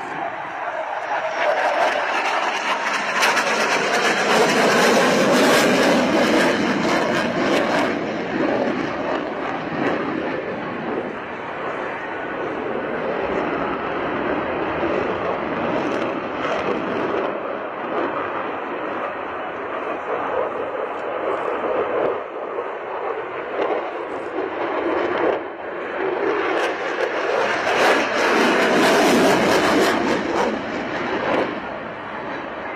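Jet noise of a twin-engine Lockheed Martin F-22 Raptor flying an air-show display, a steady rushing sound that swells loudest a few seconds in, eases in the middle and swells again near the end as the afterburners light.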